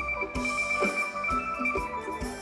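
Live Thai ramwong dance band music: held high notes over a steady drum beat of about two strikes a second.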